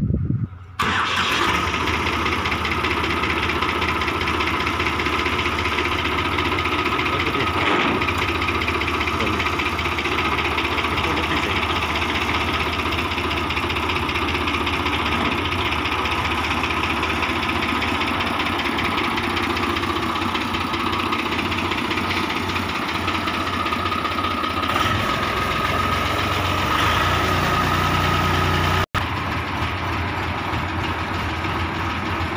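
Swaraj 855 tractor's three-cylinder diesel engine starting: a short crank, then it catches under a second in and runs steadily. A deeper rumble comes in near the end, and the sound cuts out for an instant just before the end.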